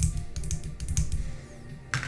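Light, irregular clicks and taps of small objects being handled, over faint background music.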